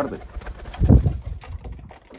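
A domestic pigeon cooing once, a short low coo about a second in.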